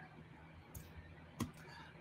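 Near-silent room tone broken by one sharp click about one and a half seconds in, a computer click that advances the presentation slide, with a faint short hiss a little before it.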